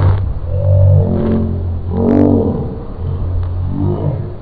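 Wordless vocal noises from a boy or boys: drawn-out growling sounds that rise and fall in pitch, loudest about a second in and again just after two seconds.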